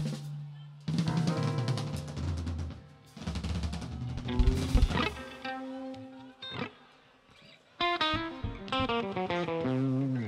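Live rock band playing: drum kit strokes with bass and chords in stop-start phrases, a short near-quiet break about seven seconds in, then a quick run of electric guitar notes.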